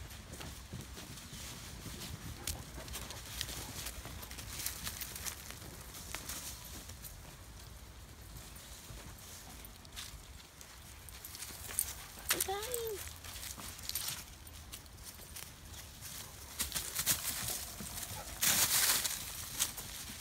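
Footsteps crunching and rustling through dry leaves and dirt on a woodland trail, with a louder stretch of rustling near the end. A short pitched call rises and falls once about twelve seconds in.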